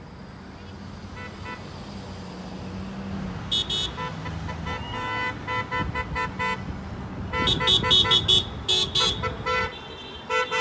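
Several car horns honking in a slow line of parade traffic, faint at first and growing louder. Many short, rapid toots overlap near the end over a low rumble of traffic.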